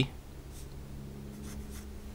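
Black felt-tip marker writing numerals on paper: a few faint, short scratchy strokes.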